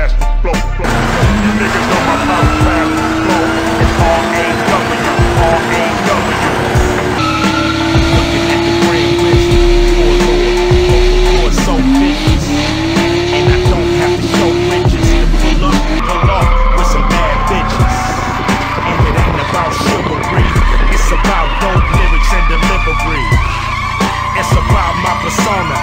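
A drift car's engine revs up and holds high while its tyres spin and squeal in a smoky burnout, then the pitch wavers as the throttle is worked. Hip hop music with a heavy bass beat plays underneath.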